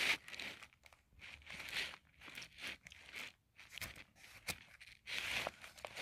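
Faint crinkling of plastic as pocket-letter card sleeves and a small plastic bag of sequins are handled, in short scattered bursts with a few light clicks and a longer rustle about five seconds in.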